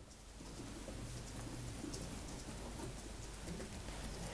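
A pigeon cooing faintly over quiet room tone.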